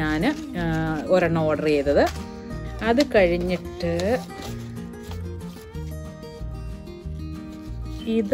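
A woman's speech over background music with a steady bass pulse. The speech stops about halfway through, and the music carries on with held notes.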